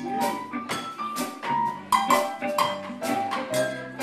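Live band playing an instrumental passage with no vocals: a drum-kit beat under a melody of single pitched notes from the keyboard.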